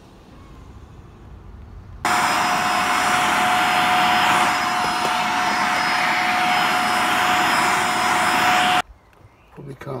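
Vacuum cleaner running with a steady high whine. It starts suddenly about two seconds in and cuts off near the end.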